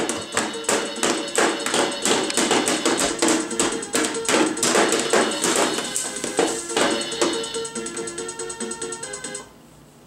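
Children's electronic toy drum set playing its built-in music track, a tune over a quick, steady percussive beat, which cuts off suddenly near the end as it is switched off.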